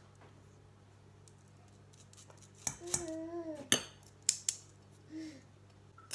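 A few sharp metal clinks and taps of a wire-mesh sieve against a stainless steel mixing bowl while sifting flour, starting about halfway through after a quiet opening. A short voice-like hum sounds among the clinks.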